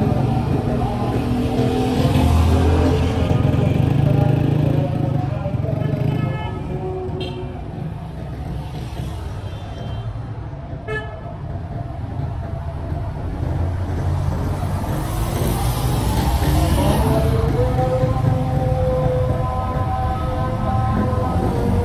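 City street traffic, with motorcycle and car engines rumbling past close by. A few short horn toots sound in the middle.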